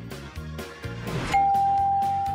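Game-show answer-reveal sound effect: a short rising swoosh about a second in, then a single bell-like ding that is held and slowly fades, over background music.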